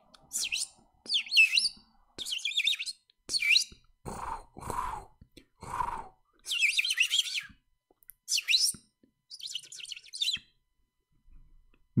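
Birds chirping in a series of short bursts of fast, sweeping high notes, with three lower, shorter calls in the middle.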